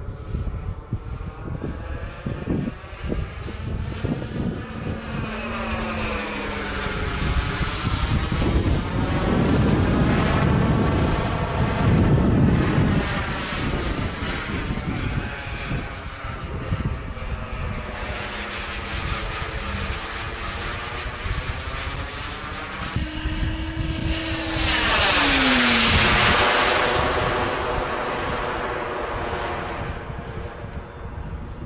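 Turbine-powered radio-controlled model jet flying overhead: a continuous jet rush and whine whose pitch swings slowly up and down as it circles. It is loudest as it passes about ten seconds in and again near the end, when a tone drops in pitch as it goes by.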